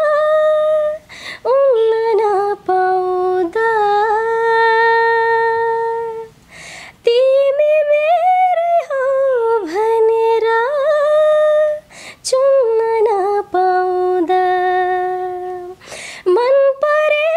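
A woman singing a Nepali song solo with no accompaniment, in long held notes with ornamented turns and slides. She breaks briefly for breath about a second in, halfway through, and again about twelve seconds in.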